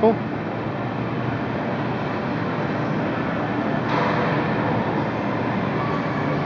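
Electric drive motors and wheels of a mechanized Bob stroller running across a hardwood floor, a steady whir and rolling noise that gets louder for about a second in the middle as it steers itself around an obstacle.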